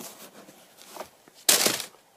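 A sneaker being handled beside its cardboard box and tissue paper: faint rustling and small taps, then a short, louder rustle about one and a half seconds in.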